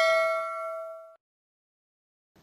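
Bell-like ding sound effect ringing with several steady tones and fading, cut off about a second in.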